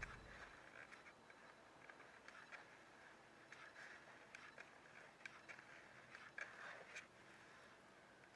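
Near silence with faint, irregular small clicks scattered throughout.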